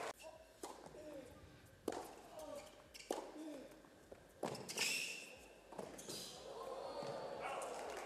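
Tennis ball struck back and forth in a rally: sharp, short racket hits about every second and a quarter, the one about four and a half seconds in the loudest.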